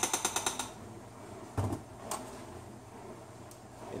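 Metal spoon tapped against a stainless steel skillet to knock off solid coconut oil, a fast run of light clicks at the start. About one and a half seconds in comes a single dull thump, then a lighter click.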